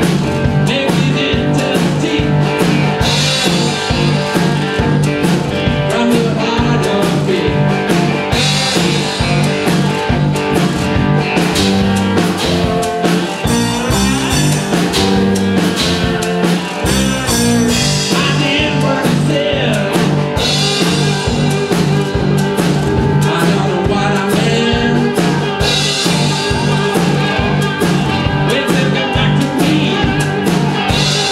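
Live bluesy rock music: amplified cigar box guitars over a steady beat.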